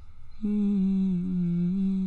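A man humming one long, steady note that starts about half a second in, with a slight drop in pitch partway through.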